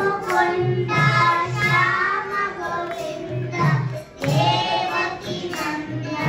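A group of young children singing a devotional bhajan together into microphones, over a regular percussion beat.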